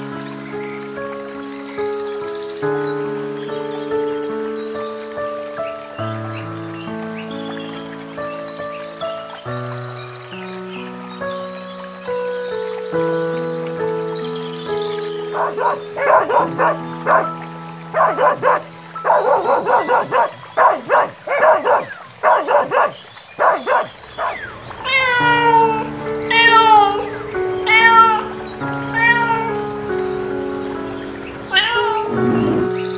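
Soft background music with long held notes throughout. About halfway in, a dog barks in a quick run of short barks for several seconds. Near the end a cat meows about four times.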